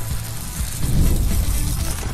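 Intro theme music with steady low bass notes and a noisy whoosh that swells to its loudest about halfway through.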